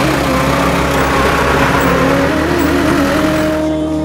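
Loud road-vehicle noise from a bus or truck, with a sung melody and steady low backing tones laid over it. The vehicle noise cuts off sharply near the end, leaving only the music.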